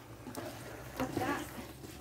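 Faint voices talking in the background over a low, steady outdoor hum.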